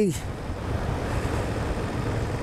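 Steady wind rush on the microphone of a 2024 BMW F800 GS riding at about 28 mph in third gear, with a low steady hum of engine and road underneath.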